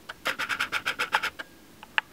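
Handling noise: a quick run of small scratchy clicks, roughly ten a second, for about a second, from fingers working a card in a plastic holder close to the microphone, then a single sharper click near the end.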